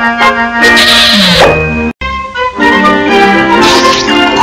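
Cartoon orchestral score music. About a second in, a hissing sound effect and a falling glide play over it. The sound drops out abruptly just before halfway, and then the music resumes.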